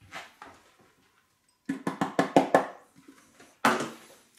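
A quick run of about six light knocks, then a brief rustle near the end: elderflower heads being tipped out of a plastic food box into a ceramic kitchen sink and handled.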